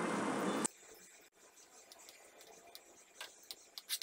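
A steady hiss cuts off abruptly well under a second in, leaving near silence. Near the end come a few faint clicks of a metal spoon against a steel mesh sieve as tomato puree is pressed through it.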